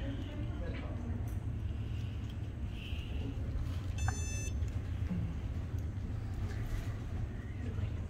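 Windcave iPP350 card-payment terminal giving a single short, high beep about four seconds in as a contactless debit card is tapped on it, signalling the card has been read. A steady low hum runs underneath.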